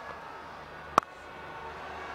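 A willow cricket bat striking a leather ball once, a single sharp crack about a second in, over a faint steady background.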